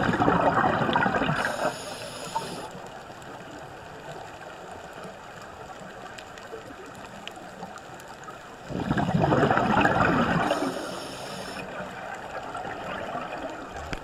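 Scuba diver's regulator breathing underwater: two loud gurgling bursts of exhaled bubbles, one at the start and one about nine seconds in, each lasting about two seconds and followed by a short high hiss, with a steady faint water hiss between breaths.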